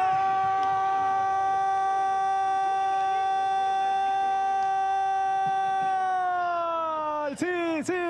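A football commentator's long goal call: one shouted "gol" held on a steady high pitch for about seven seconds, sagging and breaking off near the end, followed by quick shouts of "sí, sí".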